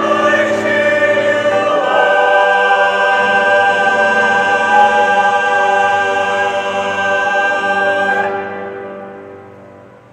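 Mixed-voice church choir singing the final words of an anthem, 'I cheer you on!', holding the closing chord. The chord breaks off about eight seconds in and dies away.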